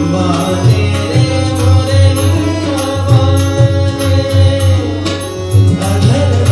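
Bhajan played live: a singer holding long, wavering wordless notes over a steady harmonium drone, with tabla keeping a regular rhythm underneath.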